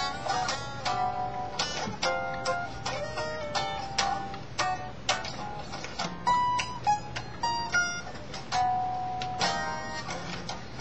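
Electric guitar played with a pick: single notes and short runs, a few notes a second, some held ringing for a moment.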